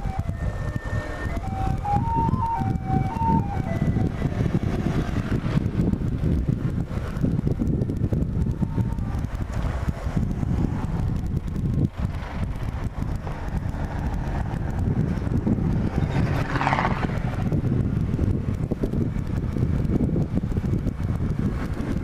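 Steady running rumble of a Bajaj Platino 100 single-cylinder motorcycle on the move downhill, mixed with wind on the microphone. A short jingle-like tune of stepping notes sounds over the first few seconds.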